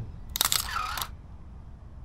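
A single-lens reflex camera's shutter firing once, about half a second in: a quick cluster of mechanical clicks lasting well under a second as a photo is taken.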